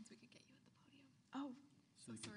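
Faint, hushed speech away from the microphone, with one short, louder spoken syllable about a second and a half in.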